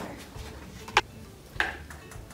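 A sharp click about a second in, then a softer click with a short scrape about half a second later: scissors and a cut-down cup being handled and set on a tabletop.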